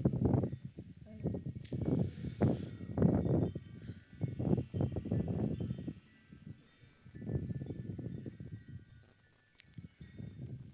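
Wind buffeting the phone's microphone in irregular low rumbling gusts, with a wind chime ringing faintly, several high tones overlapping and lingering.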